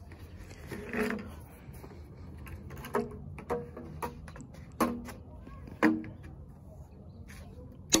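Hollow PVC pipes knocking against each other and their fittings as a pipe is pushed into a joint, a few sharp knocks with a short ringing tone after each, the loudest near the end.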